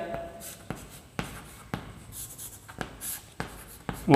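Chalk writing on a chalkboard: several sharp taps as the chalk meets the board, with short, light scratching strokes between them.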